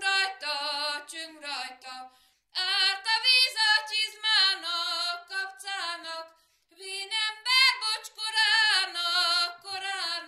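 A female voice singing a Hungarian folk song unaccompanied, with vibrato, in three phrases broken by two short pauses for breath.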